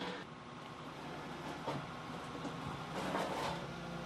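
Volvo C-Series crawler excavator's diesel engine running steadily as a faint low hum, with a couple of brief faint hisses.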